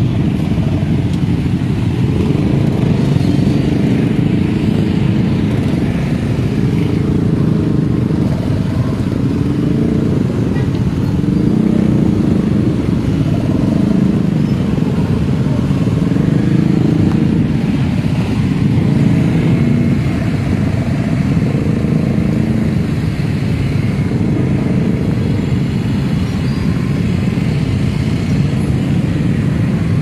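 Engines of a large column of motorcycles running together at riding speed: a steady, loud drone whose pitch wavers as riders ease on and off the throttle.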